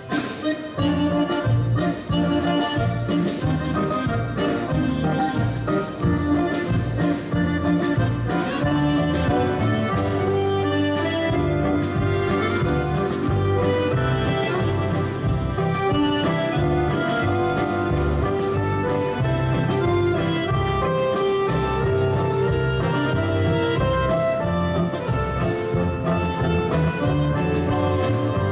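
Live instrumental band playing a film theme: an accordion leads over acoustic guitar, double bass, drums and keyboard, with a steady beat.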